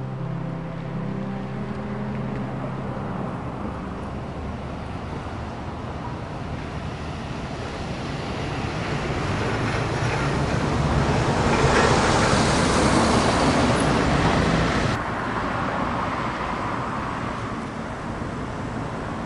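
Road traffic noise: a vehicle going by swells to a peak about two-thirds of the way through and cuts off suddenly soon after. A low music drone fades out in the first few seconds.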